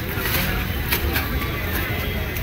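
Wind buffeting the microphone, with people talking indistinctly in the background and a few light clicks.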